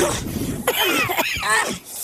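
Men coughing and spluttering, as if choking on a blast of steam. A rushing noise fades away in the first half-second.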